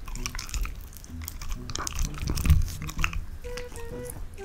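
A Samoyed biting meat off a skewer and chewing it close to a microphone: irregular wet chomps and sharp clicks, the loudest about two and a half seconds in.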